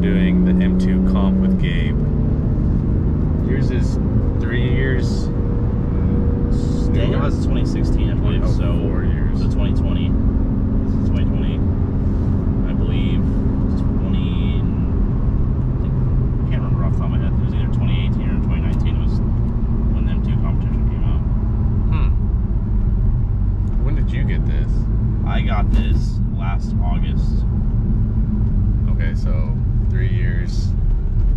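BMW M2 Competition's twin-turbo straight-six cruising, heard from inside the cabin over steady tyre and road noise. The engine note drops a step about a second and a half in and shifts again about nine seconds in.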